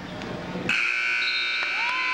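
Gym scoreboard buzzer going off suddenly about two-thirds of a second in and holding one steady harsh tone, the signal that a wrestling period has ended.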